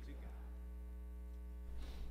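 Steady electrical mains hum through the church sound system: a low buzz with a ladder of evenly spaced tones. A faint rustle comes near the end.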